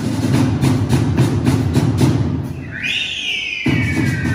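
A live Mexican banda brass band plays, with a tuba bass line and drum strokes on a steady beat. About two and a half seconds in, the bass and drums drop out briefly under a high, falling melody line, then come back just before the end.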